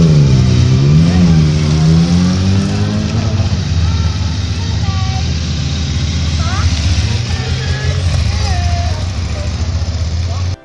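Motorcycle engines running as bikes pull away, the loudest note rising and falling in pitch over the first three seconds and then fading out, over a steady low engine hum. Voices are heard over the engine noise in the second half.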